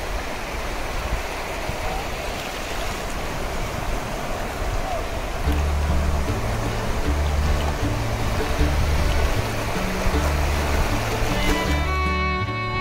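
Shallow sea waves washing over sand as a steady rush of water. About halfway through, background music comes in under it with a bass line of held low notes, and bowed strings join near the end.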